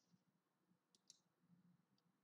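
Near silence with two faint computer-mouse clicks in quick succession about a second in.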